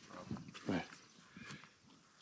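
Faint, short animal sounds from a young donkey standing close at the fence, with a softly murmured word.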